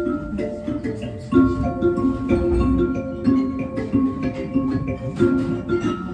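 Music played on a hand-held tuned percussion instrument: a repeating melody of struck notes that ring on and overlap, with a low thud under it a little past the middle.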